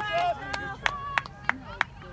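Sideline spectators applauding a shot on goal: a few sharp hand claps about three a second, with cheering voices at the start.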